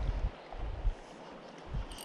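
Wind buffeting the microphone in uneven low rumbling bursts, over a steady faint hiss.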